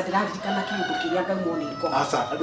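A rooster crowing in one long call.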